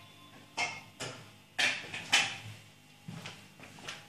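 Scattered knocks and bumps of a person getting up from a chair and handling the recording camera, about half a dozen in all, the loudest a little past two seconds in.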